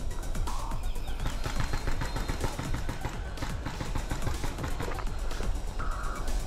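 Paintball markers firing during a game: an unbroken rattle of sharp, overlapping pops, many shots a second.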